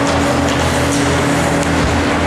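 Steady ice-rink ambience: a constant mechanical hum with a few steady tones, under the noise of youth hockey play, with faint clacks from sticks and skates on the ice.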